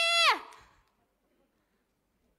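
A high-pitched shouted voice holding the last syllable of an angry threat, then falling in pitch and breaking off about half a second in; after that, near silence.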